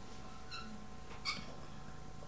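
Pause in speech: steady low room hum, with a faint short squeak about half a second in and a soft click a little past a second.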